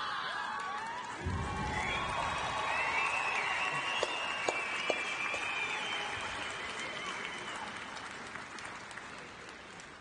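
A women's team performing a haka: many voices shouting and chanting in unison, over a stadium crowd's clapping and cheering. A low thump about a second in; the chant fades away over the second half.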